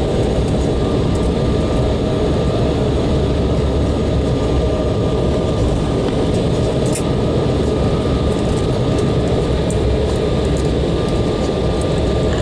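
Steady cabin noise of an Embraer 190 rolling out on the runway just after touchdown: a loud even rumble with a thin steady whine from its GE CF34 turbofan engines, the jet slowing as the ground spoilers are stowed.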